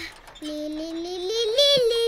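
A long held, sung note in a child-like voice, starting about half a second in, stepping up in pitch towards the middle and then settling lower.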